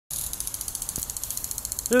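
Lawn sprinkler running, spraying water with a rapid, even ticking of about ten ticks a second.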